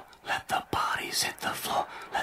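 A person whispering in short, breathy syllables.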